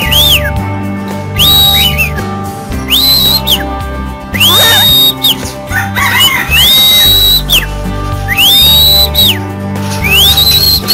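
Music: steady bass notes under a whistle-like lead that glides up, holds a high note and slides back down, repeating about every one and a half seconds.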